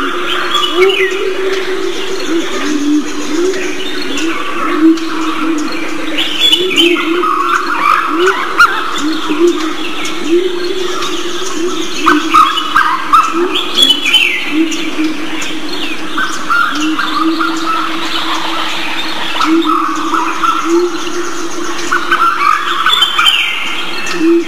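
Several birds chirping and calling, with a falling call repeated every several seconds over a continuous low tone.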